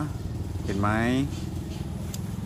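An engine idling steadily, a low even rumble.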